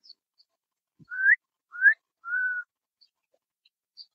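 Someone whistling three short notes: two quick rising whistles, then one held level whistle.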